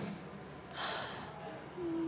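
A person's quiet breathy gasp into a close microphone about a second in, followed near the end by a short faint hum of voice.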